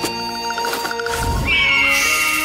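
Cartoon music with an animal-cry sound effect about one and a half seconds in: a high call that rises sharply, then holds and slowly falls.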